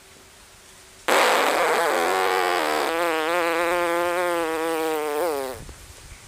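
Lips buzzing as air from puffed cheeks is pushed slowly out through a small gap at the centre of the lips, with the fingers pressing the cheeks. This is the cheek-powered 'false exhale' that is the first step of circular breathing for didgeridoo. It starts suddenly about a second in, rough and airy at first, then settles into a steady buzzing tone for a few seconds before stopping.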